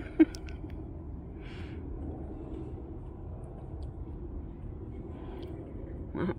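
The tail of a short laugh right at the start, then a steady low outdoor background rumble.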